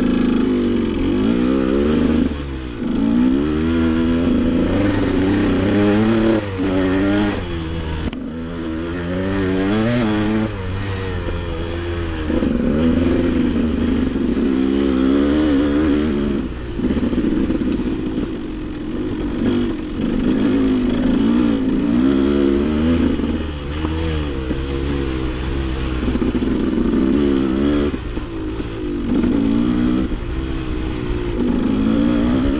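Dirt bike engine under way, revving up and down constantly as the throttle is worked. The revs drop briefly a few times, around 2, 8 and 16 seconds in, then climb again.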